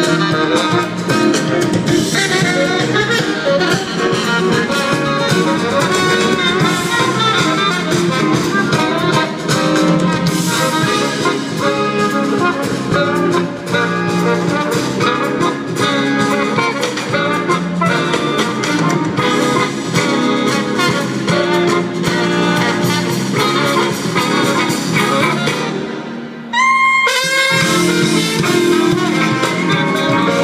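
Live jazz small group (a jazztet: horn front line with rhythm section) playing. Near the end the band drops out for about a second, leaving a short high figure on its own, then comes back in.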